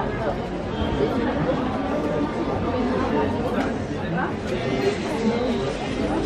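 Indistinct chatter of many people talking at once in a busy restaurant dining room, a steady babble of voices.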